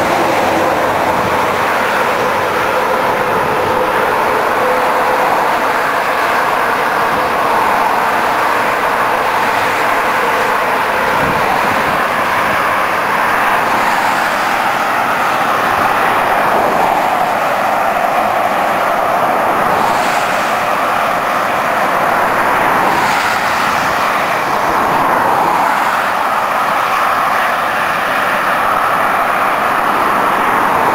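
Steady highway road noise from vehicles travelling on the motorway, an even rushing that stays at one level throughout.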